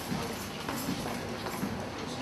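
A few light knocks of footsteps and handling, picked up through a handheld microphone as its holder walks, over a steady background hiss.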